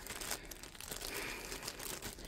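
Faint crinkling of a small clear plastic zip-top baggie as it is picked up and handled.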